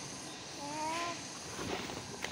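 Quiet outdoor background with one short, soft hum from a person's voice about half a second in, rising slightly in pitch and then holding; a couple of faint light taps follow.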